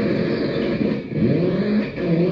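Experimental electronic music: layered pitched tones that keep swooping up and down in pitch, like revving, with a brief dip in level about a second in.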